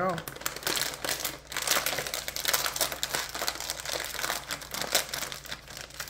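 Crinkly snack bag of cheese curls crackling continuously and irregularly as hands rummage inside it and handle its open top.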